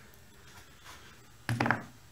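Quiet room tone, then one short thunk about one and a half seconds in.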